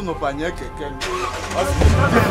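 Pickup truck engine starting about three-quarters of the way in, a low rumble, under men's voices and background music.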